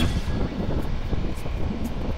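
Wind rumbling on the microphone high up on an open tower, with a few faint clicks.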